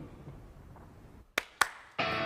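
Two sharp clicks about a quarter of a second apart near the end, over a low rumble that fades away.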